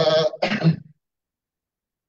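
A man's voice over a video call, a word or two under a second long, then cut to dead silence.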